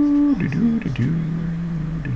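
A man humming to himself: a held note that slides down about half a second in and settles on a lower held note.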